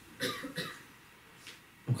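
A person coughing: two short coughs in quick succession near the start.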